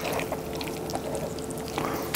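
Moist tearing and squishing of a cooked chicken's wings being pulled off by hand, with a few small clicks.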